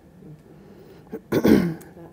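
A person clears their throat once: a short, harsh burst about a second and a half in.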